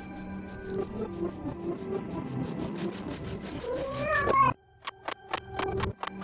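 Cartoon soundtrack music with a cartoon cat's vocalization rising and bending in pitch past the middle, the loudest sound, which cuts off suddenly. A quick run of about eight sharp knocks follows near the end.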